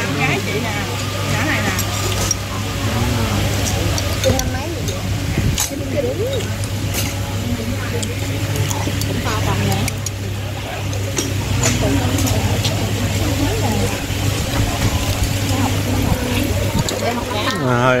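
Busy restaurant background: many overlapping voices chattering, over a steady low hum, with occasional clinks of a metal spoon against a ceramic bowl.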